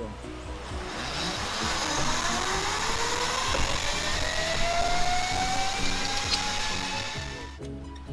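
Zipline trolley pulley running along a steel cable, a whine that climbs slowly in pitch as the rider picks up speed, with a rush of air over it. It cuts off sharply near the end. Background music plays underneath.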